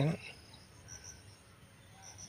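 Faint, high-pitched insect chirping: a few short chirps over a quiet background.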